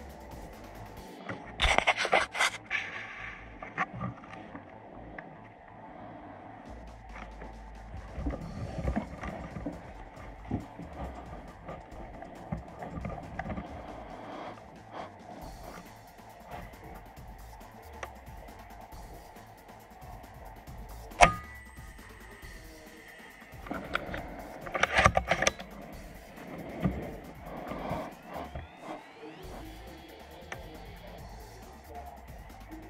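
Background music, with one sharp crack about 21 seconds in: the report of a PCP air rifle firing.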